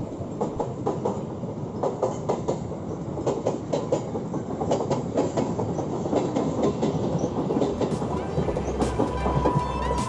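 Mumbai suburban EMU local train passing close by, its wheels clacking in a rapid run of clicks over the rails with a steady running noise. A thin steady whine comes in near the end as the last coach goes by.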